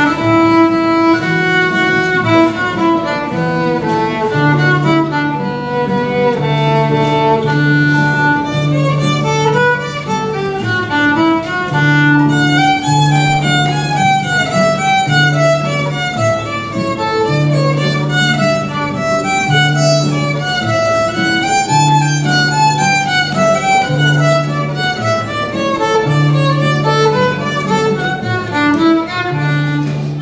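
A fiddle playing a tune of quickly changing notes, accompanied by acoustic guitar chords with a repeating bass line underneath.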